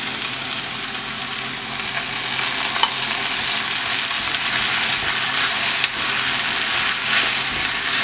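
Onion, garlic and freshly added diced tomato sizzling steadily in hot oil in a glazed clay cazuela. A wooden spoon stirs the mixture, the sizzle getting brighter in the second half.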